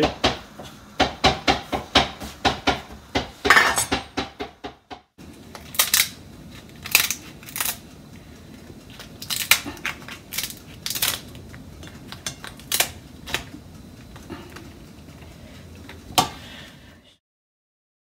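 Kitchen shears cutting through a steamed lobster tail's shell: a series of sharp snips and cracks, closely spaced in the first few seconds and then more scattered.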